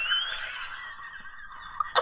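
A man laughing: a brief high-pitched squeal that rises at the start, then fading to faint, near-silent laughter.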